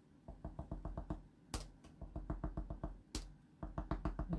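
A small snowflake stamp tapped quickly and repeatedly onto card: light taps about six or seven a second, with two louder knocks about a second and a half apart.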